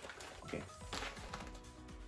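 A foil snack bag crinkling and fried corn kernels rattling out into a hand in a few short bursts, over soft background music.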